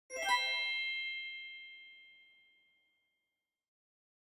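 A single bright chime sound effect: one struck, bell-like ding with several ringing tones at once, which fades out over about two and a half seconds.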